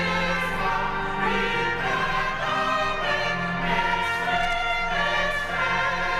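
Church choir singing in long held notes, accompanied by trumpets.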